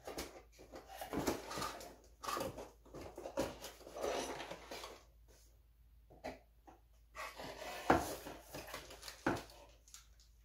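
Hands rummaging through boxes and plastic packaging: irregular rustling and crinkling, with two sharper knocks near the end.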